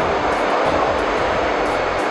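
Steady, loud background din of a busy exhibition hall, an even rushing noise with a faint steady hum and no sudden events.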